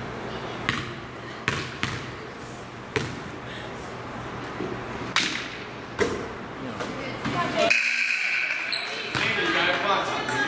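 Basketball bouncing on a hardwood gym floor during a free throw, several sharp bounces unevenly spaced, over voices in the gym.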